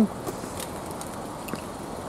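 Steady, faint outdoor background noise with a few soft ticks.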